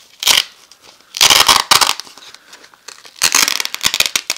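Hook-and-loop (Velcro) fastener ripping apart as a flexible LED panel is peeled off a T-shirt's backing. There are three bursts: a short one at the start, a longer one about a second in, and a crackly one near the end.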